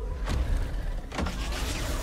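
Movie trailer sound design: a deep, steady low rumble with several quick whooshing sweeps over it.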